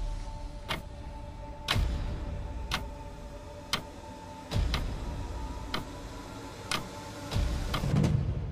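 Clock-tick countdown sound effect, about one tick per second, over two soft held tones with a deep thump roughly every three seconds.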